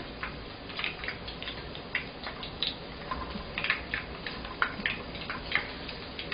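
Corn-and-batter balls deep-frying in a wok of hot oil: a steady sizzle with frequent small, irregular pops and crackles.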